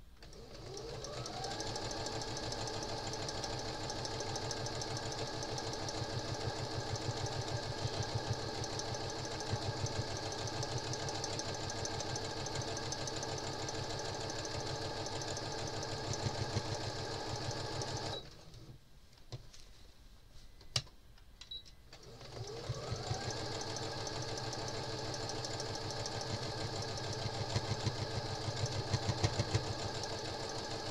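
Electric sewing machine stitching around the edges of a quilt block: the motor winds up just after the start and runs steadily with a fast needle rhythm. It stops for a few seconds past the middle, with a couple of clicks, then winds up again and keeps stitching.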